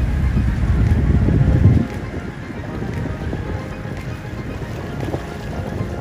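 Wind buffeting the microphone with a loud low rumble that cuts off suddenly about two seconds in, leaving a softer steady hiss of wind over open water.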